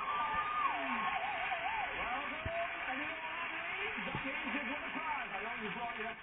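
A TV game-show studio audience cheering and applauding after a contestant wins a prize, with voices calling out over the steady clapping. It is heard through the television's speaker.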